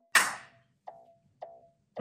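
Trailer music: one loud, sudden percussive hit that rings out for about half a second, followed by two softer plucked notes on the same beat.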